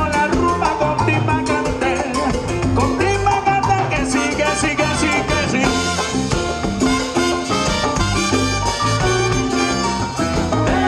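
Live salsa band playing over loudspeakers, with congas, drum kit and a horn section of trumpet and trombones driving a steady dance beat.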